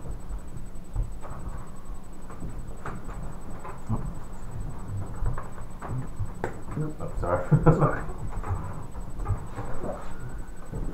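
Board game pieces and cards being handled on a tabletop: scattered light clicks and knocks, thickening about seven to eight seconds in.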